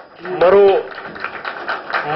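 A short voiced sound from a man, then over a second of rapid, fine mechanical clicking, like a fast ratcheting run.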